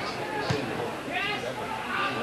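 A football struck hard for a shot, one sharp thud about half a second in, over crowd noise with a voice shouting just after.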